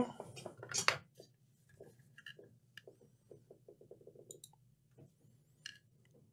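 Laptop motherboard being handled on a workbench: one sharp knock about a second in, then faint scattered clicks and a run of soft taps.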